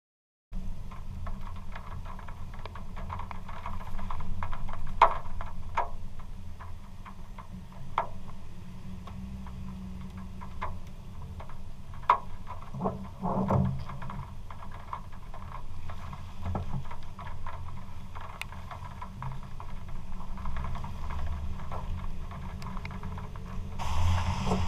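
A vehicle on a wet road: a steady low rumble of engine and tyres, with scattered clicks and knocks over it.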